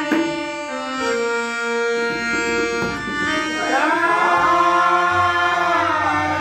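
Harmonium playing held notes with tabla accompaniment in a devotional bhajan. A voice comes in singing about halfway through, and deep tabla strokes sound near the end.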